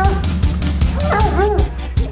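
Redbone coonhound barking in short arched yelps, once at the start and then three or so in quick succession about a second in, over background music with a steady beat.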